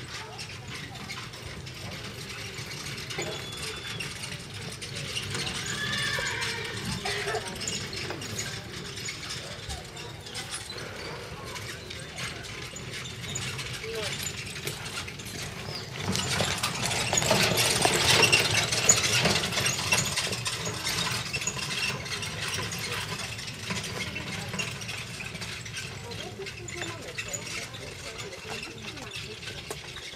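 Horses and a horse-drawn carriage on a grass arena, with voices in the background. The sound swells loudest for a few seconds about halfway through, when a horse is right beside the microphone.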